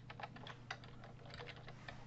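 Typing on a computer keyboard: an irregular run of faint key clicks.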